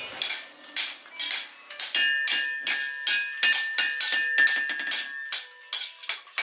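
Two smiths forging a knife blade on a steel anvil, a sledgehammer and a hand hammer striking in turn at about four blows a second. From about two seconds in each blow rings with a clear metallic tone that hangs on between strikes.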